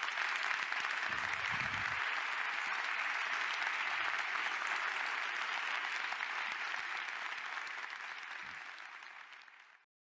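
Audience applauding steadily, fading out over the last few seconds and then cutting off abruptly.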